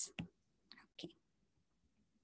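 A few faint, short taps of a stylus on a tablet screen, three in the first second, then near silence.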